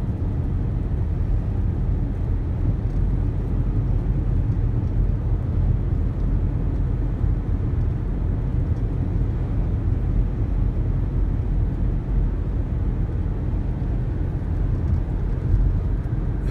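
Steady low rumble of road and engine noise heard inside a car's cabin while it cruises down a paved road.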